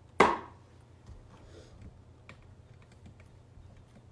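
A single sharp knock on the tabletop just after the start, the loudest sound, followed by light scattered clicks and crackles of dry twigs being handled and pressed onto a canvas.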